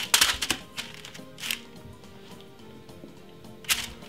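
Quiet background music, with a few sharp crinkling rustles of parchment baking paper as pieces of marinated lamb are laid in a lined oven tray. The loudest rustles come at the start and again near the end.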